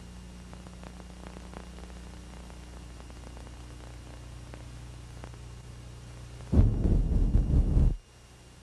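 Steady low hum with faint crackles on a bootleg workprint's soundtrack. About six and a half seconds in, a loud deep rumble starts suddenly and cuts off abruptly at the end.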